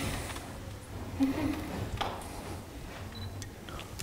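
Light handling noise: a few soft clicks and scrapes, among them a sharper click about two seconds in, over a low steady room hum.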